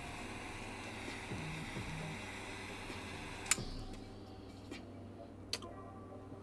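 Butane torch lighter's jet flame hissing steadily while a cigar is toasted and lit, cut off by a sharp click about three and a half seconds in; a few faint clicks follow.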